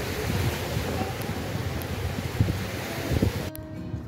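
Wind noise on the microphone over the steady wash of surf on a beach, with irregular low gusts. It cuts off abruptly about three and a half seconds in.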